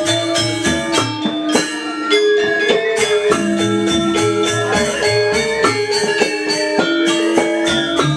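Balinese gamelan music: bronze metallophones playing quick, evenly spaced ringing strokes over a low pulse that repeats steadily.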